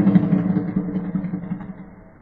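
Low, muffled drone of a sonidero spot sample, fading out steadily as its tail dies away.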